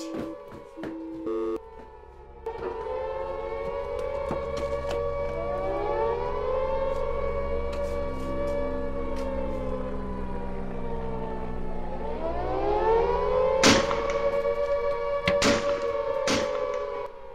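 An air-raid warning siren wailing, starting about two and a half seconds in. It rises, holds, sinks away and rises again near the end, after a few short beeping tones at the start. Loud thumps cut through it near the end.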